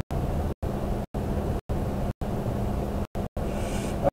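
Steady low background rumble with a faint hum, cut off into complete silence for brief moments several times; a short hiss near the end.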